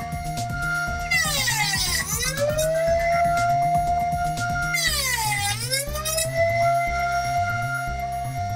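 Router spinning with a steady whine that twice drops sharply in pitch and climbs back as the bit is loaded cutting finger-joint slots in a wooden board. Background music with a rhythmic bass plays underneath.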